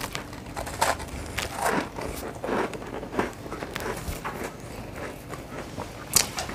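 Close-up chewing of a bite of cake rusk, a dry, soft baked biscuit: irregular short chewing sounds every half second or so.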